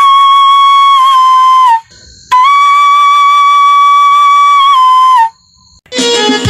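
A flute-like wind instrument in the background music playing two long held notes at the same pitch, each about three seconds long with a slight dip in pitch as it ends, separated by a short break.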